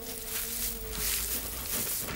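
A single held tone that sinks slightly and fades out near the end, over a steady background hiss.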